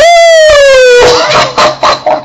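A man's loud, high falsetto wail held for about a second, sliding steadily down in pitch, then breaking off into shorter, rougher vocal sounds.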